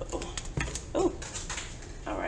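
Light clicks and rustles of tarot cards being handled, with a short whine-like vocal sound about a second in.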